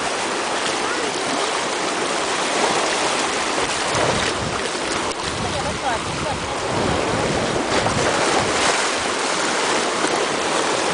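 Shallow seawater rushing and washing over and between shoreline rocks: a steady, loud rush of water that swells deeper around the middle.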